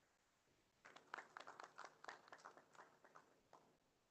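Faint, scattered hand clapping from an audience, starting about a second in and tailing off before the end.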